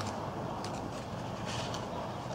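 Cardboard packaging scraping and rustling as a fire piston is slid out of its box insert, a few soft scrapes over a steady low background hum.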